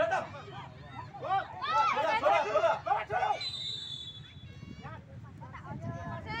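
Spectators and players calling out in several voices, then a steady high whistle tone lasting about a second.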